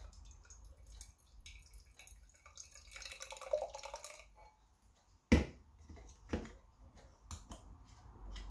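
Beer pouring from an aluminium can into a glass, splashing and glugging unevenly because the can's tab was not fully opened. About five seconds in there is one sharp, loud knock, followed by a few small clicks.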